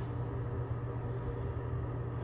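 Steady low hum with a faint even hiss: room tone.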